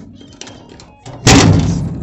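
A single loud thump about a second in, fading out over under a second.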